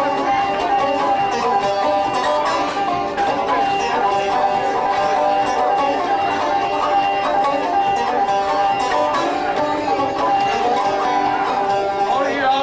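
Resonator banjo picked in a fast, steady stream of notes, an instrumental break with no singing.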